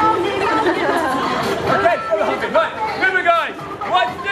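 People talking: voices and chatter from the performer and the crowd around him.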